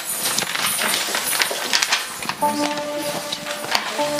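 A break in the carol singing filled with irregular clicks and rustling. About halfway through, an electronic keyboard comes in with a sustained chord.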